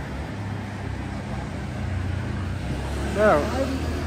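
Road traffic: a vehicle engine running with a steady low rumble. A person's voice comes in briefly near the end.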